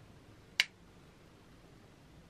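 A single sharp plastic click from a makeup brush and a hand-held plastic powder compact being handled, with faint room tone around it.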